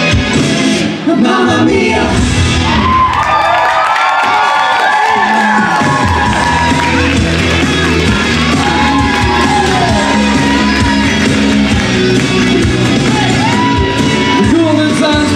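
Live pop music played loud through a PA, with singers' voices over a steady bass beat and the audience cheering along; the music drops out briefly about a second in and then comes back.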